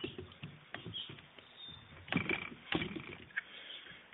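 Several short metallic clicks and light knocks of hands working the stiff gas tube retaining lever on a Saiga AK-type rifle.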